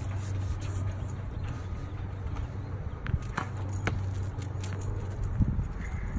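A few sharp knocks of a tennis ball being struck with a racket and bouncing on the concrete driveway, two of them close together a little past the middle, over a steady low hum.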